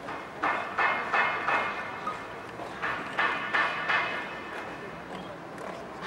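Royal Life Guards drilling in formation: boots stamping and rifles handled in unison, heard as two quick runs of about four sharp strikes each, the second run about three seconds in.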